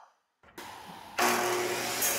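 Electric miter saw's motor switching on about a second in and running at speed with a steady whine.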